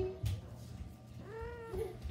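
A kitten meowing: one rising-and-falling meow a little after halfway, then a short squeak.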